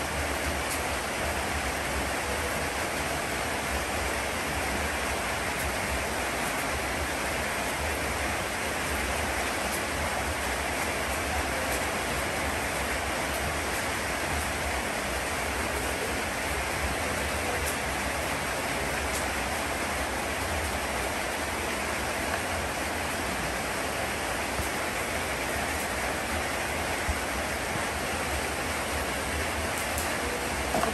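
A steady, even rushing noise with no breaks or distinct strokes, like falling rain or flowing water.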